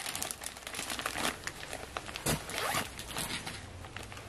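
The zipper of a fabric bag running, with the crinkling of plastic-wrapped suit packets as they are handled and lifted out.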